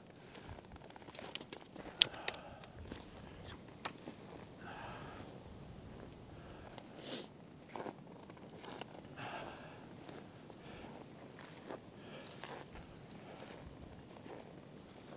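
Footsteps of a person walking through snow in period leather shoes, quiet and irregular, with a sharp click about two seconds in.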